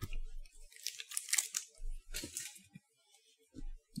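A person chewing a small chocolate-filled marshmallow close to the microphone: a few short, crinkly mouth-noise bursts.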